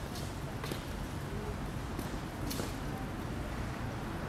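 Outdoor city background noise: a steady low rumble with a few short clicks scattered through it.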